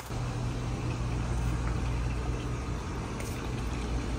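A steady, low machine hum that holds the same pitch throughout.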